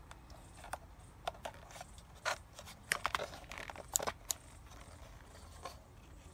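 Scattered small clicks and scrapes of a plastic trail camera being handled as an SD memory card is pushed into its slot. The sharpest clicks come around the middle.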